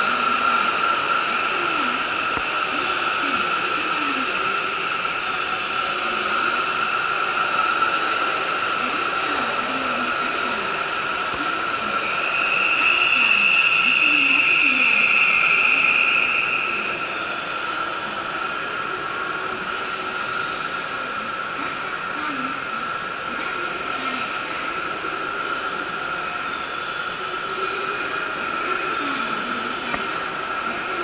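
Station platform sound of trains: a steady mechanical hum with faint distant voices. A louder, high, hissing tone swells in near the middle, holds for about four seconds, then fades.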